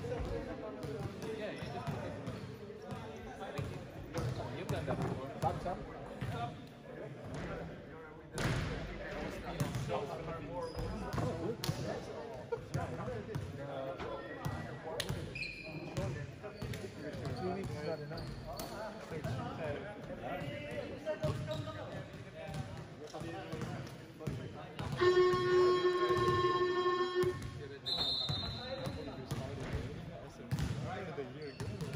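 Basketballs bouncing on an indoor gym court floor, repeated thuds echoing in the hall under the chatter of players. About 25 seconds in, a game buzzer sounds one steady tone for about two seconds, the loudest sound here.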